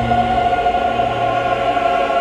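Choral soundtrack music: a massed choir holding many close, sustained notes at once in a dense, unmoving chord, with the lowest notes dropping away near the end.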